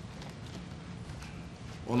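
Footsteps of a man walking across the chamber, faint and irregular, over a low steady room hum. A man's voice begins speaking near the end.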